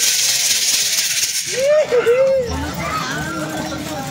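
A dance troupe's hand rattles shaking in a dense, steady hiss for about the first second and a half, then fading as voices take over.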